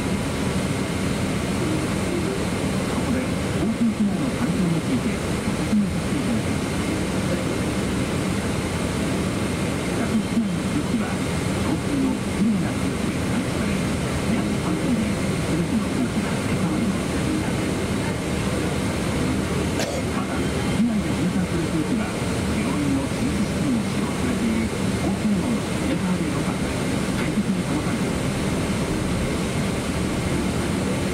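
Steady airliner cabin hum inside a Boeing 777-200, with a low murmur of passenger voices.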